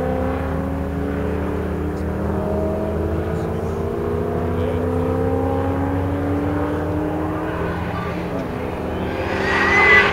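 Tuned HSV GTS V8 engine pulling hard, its pitch climbing slowly and steadily for several seconds, then dipping and rising louder near the end as the car comes closer, with a brief tyre squeal at the very end.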